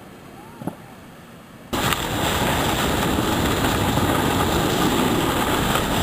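After a quiet start, a steady noise starts abruptly about two seconds in: a snowboard sliding and scraping over rock-hard snow while the camera rides along with it, with wind rushing over the microphone.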